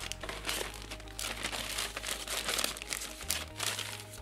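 Clear plastic bag crinkling and rustling in irregular bursts as flat cardboard pieces are pulled out of it and handled.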